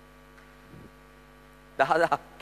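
Steady mains hum from the amplified sound system during a pause in a man's speech; his voice starts again near the end.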